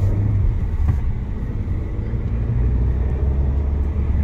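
Road and engine noise heard inside a moving car's cabin: a steady low hum with tyre noise over it. About two and a half seconds in, the hum drops lower in pitch and grows stronger.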